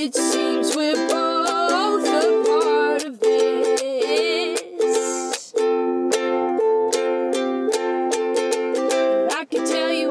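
Ukulele strummed in a steady rhythm of chords, about three or four strokes a second, breaking off briefly twice, with a wordless sung melody rising and falling over it.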